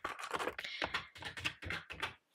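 Quick irregular clicking of keys being tapped on a wooden desk calculator, mixed with the handling of paper bills and a plastic binder pocket.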